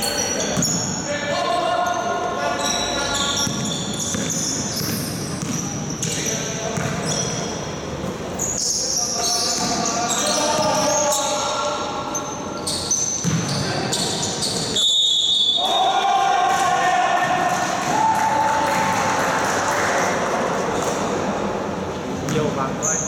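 Indoor basketball game: a ball bouncing on the court amid players' shouts and calls, echoing in a large sports hall.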